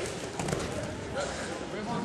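A single dull thud about half a second in as a wrestler is thrown down onto the wrestling mat, over a murmur of spectators' voices in a gym.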